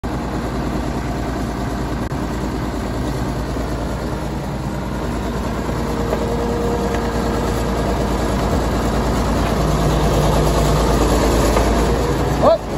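Diesel engine of a heavy tracked earthmoving machine running steadily, slowly growing louder.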